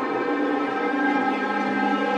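Synth drone from a Korg Volca Modular and Korg NTS-1: a sustained, many-toned chord of steady pitches that holds evenly, with a low tone settling in near the start.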